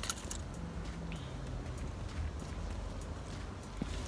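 Quiet steady low rumble of outdoor background noise, with a few faint clicks. No engine is running.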